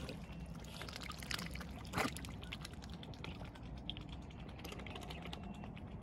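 Mute swan and cygnets dabbling for seeds in shallow water, their bills sifting and splashing at the surface with a rapid run of small clicks and one louder click about two seconds in.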